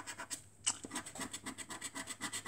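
A scratchcard's silver panel scraped off with a silver bar-shaped scratcher in quick, even back-and-forth strokes, about ten a second, with one sharper scrape about two-thirds of a second in.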